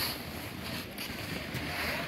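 Wind buffeting the microphone outdoors, a steady rushing noise.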